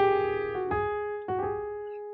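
Piano playing a jazz-gospel chord passage over an E-flat bass: three chords struck less than a second apart, each left to ring and fade.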